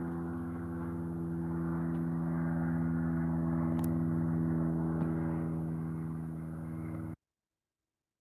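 A steady low mechanical hum made of several held tones, unchanging, that cuts off suddenly about seven seconds in.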